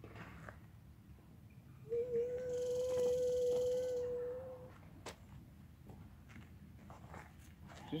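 A man humming a steady, unwavering buzz to imitate a mosquito, held for about three seconds, then a single short click.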